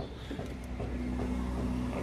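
A steady low engine hum, with a faint held tone that is strongest in the middle.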